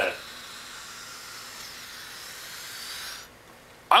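Air hissing steadily out of a balloon through a short PVC pipe under a CD hovercraft, the flow held back by a piece of screen inside the pipe; the hiss stops abruptly near the end.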